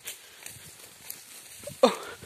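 Rustling and light steps through dry grass, then a short, loud voiced grunt-like call near the end.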